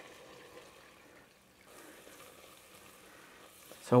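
Faint sizzle of melted butter in a heavy-bottomed saucepan as flour is added and stirred in with a wooden spoon to start a roux. It nearly drops out about a second and a half in, then returns.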